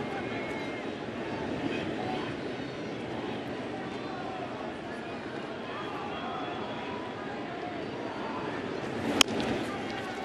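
Steady crowd chatter filling a baseball stadium, then about nine seconds in a single sharp crack of a bat hitting a pitched ball, with the crowd rising slightly after it.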